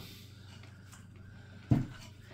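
Quiet room tone with a steady low hum, broken once near the end by a single short, dull thump.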